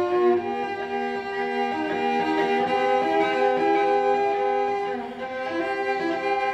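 Solo cello played with the bow, holding long sustained notes that change pitch only a few times, with a short drop in loudness near the end before new notes begin.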